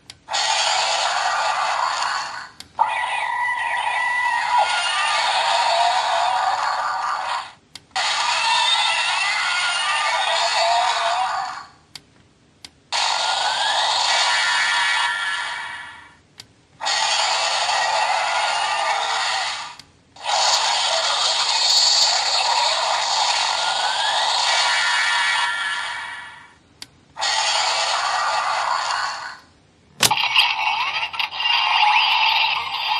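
Black Spark Lens transformation toy (Ultraman Trigger Dark version) playing electronic sound effects and music through its small built-in speaker. The sound comes in six bursts of a few seconds each, with short pauses between them, and is thin and tinny.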